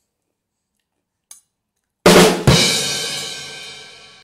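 Drum-kit sound effect: a drum hit about two seconds in, a second heavier hit a moment later, then a cymbal ringing and fading out.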